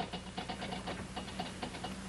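Typewriter keys clacking in a quick, uneven run, faint under a steady low hum.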